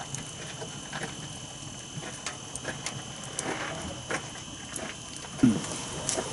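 Wood fire crackling and popping in an open-doored wood stove, with scattered sharp snaps over a low hiss. A brief low voice-like sound comes near the end.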